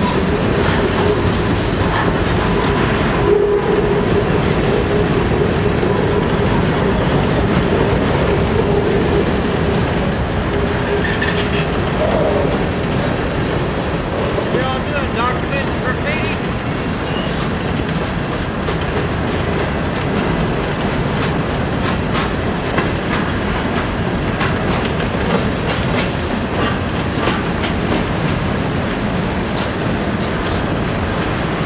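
Freight train of covered hopper cars rolling past close by: a steady, loud rumble of wheels on rail with clickety-clack over the joints. A steady tone holds for about the first ten seconds, and sharp clicks come in the second half.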